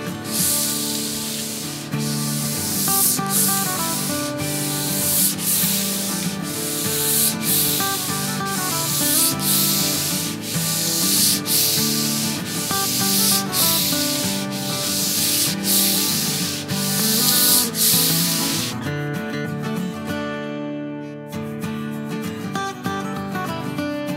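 Hand sanding with 400-grit sandpaper over a coat of sanding sealer on a stained oak top: back-and-forth strokes about once a second, stopping a few seconds before the end. Background guitar music plays underneath.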